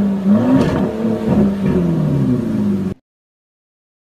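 Car engine revving, its pitch rising and falling several times, then cutting off suddenly about three seconds in.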